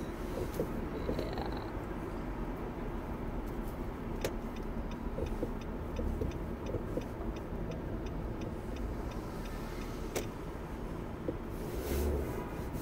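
Car interior road noise, a steady low rumble, while driving in slow city traffic. A sharp click about four seconds in starts a regular light ticking, about three to four ticks a second, typical of a turn-signal indicator, which stops with another click about ten seconds in.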